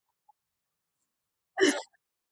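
Near silence, broken near the end by one brief vocal sound from a person, a short hiccup-like burst from the throat.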